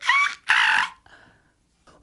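Monkey screaming: two shrill calls, the second longer, ending about a second in.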